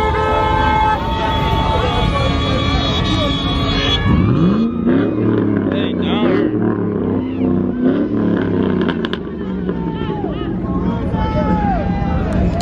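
Muscle-car engines running among people shouting, with one engine revving up sharply about four seconds in. Several steady held tones, like car horns, sound through the first few seconds.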